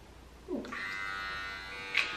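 Small electric hair clipper starts buzzing about half a second in and runs steadily while it cuts a toddler's hair.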